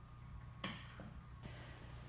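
Faint, steady low hum of room tone, with one sharp click a little after half a second in and two fainter ticks after it.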